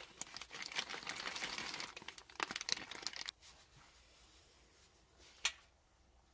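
Crinkling of an MRE flameless ration heater bag and food pouch being handled and folded over for about three seconds. After that it goes much quieter, apart from one sharp click near the end.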